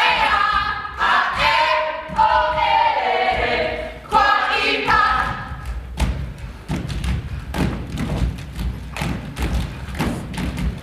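A group of dancers' voices chanting together in unison for about six seconds, then their bare feet stomping and slapping on the stage floor in a quick, uneven run of thuds.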